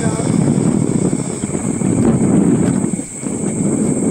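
Steady, loud low rumbling noise of a moving ride over the rainforest, picked up on a camcorder microphone, with indistinct voices in it; it dips briefly about three seconds in.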